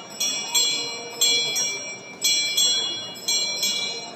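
A small high-pitched bell rung in a steady rhythm: pairs of strikes about a third of a second apart, a pair roughly every second, each ringing on briefly. A murmuring crowd is heard underneath.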